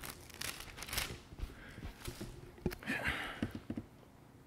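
Thin Bible pages being turned by hand, with irregular rustles and crinkles and a few soft knocks.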